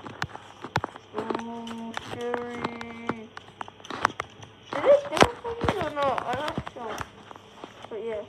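Dogs' claws clicking and scrabbling on a wooden deck as two small terriers play. Whine-like vocal sounds come in as well: a held, steady one at about a second in, and wavering ones past the middle.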